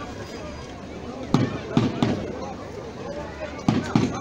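Loud firecracker bangs going off at uneven intervals, five in under three seconds, two close pairs among them, over a steady murmur of a crowd.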